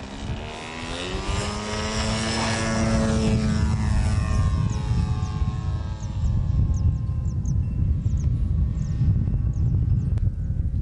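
Radio-controlled model airplane's engine rising in pitch over the first second of its takeoff run, holding a steady high note, then fading as the plane climbs away. A heavy low rumble runs underneath.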